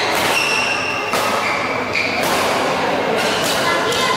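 Badminton rally: sharp racket strikes on the shuttlecock, about one a second, ringing in a large hall.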